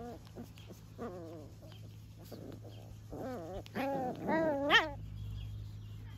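Bolonka puppies yelping while they play-wrestle: a short yelp at the start, another about a second in, then a quick run of rising-and-falling yelps from about three seconds in, the last one the loudest.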